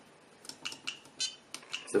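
Button presses on an ISDT BG-8S battery checker: about five short clicks through the menu, some carrying a brief high electronic beep from the unit.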